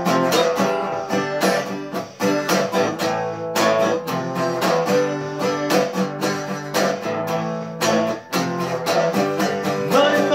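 Acoustic guitar strummed in a steady rhythm of chord strokes, an instrumental passage of a song with no singing.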